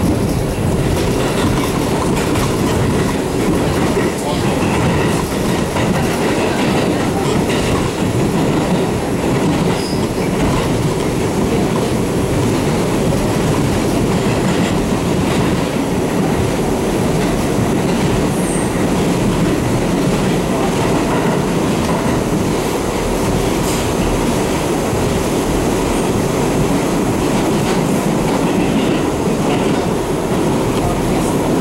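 Inside a 1985 R62A New York subway car running at speed through a tunnel: a steady, loud rumble of wheels on rail and running gear, with scattered clacks over the rail joints.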